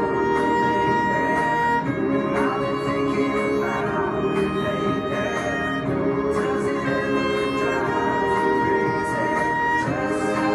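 Solo violin played along with a recorded pop song's backing track, with no vocals in this stretch. The violin holds one long high note near the start and another near the end, with shorter phrases between.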